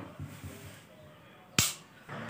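A single sharp click about one and a half seconds in.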